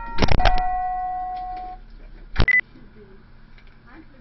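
A two-note electronic door chime, its second note ringing out and fading over about a second and a half, with clicks around its start. A single sharp knock comes about two and a half seconds in.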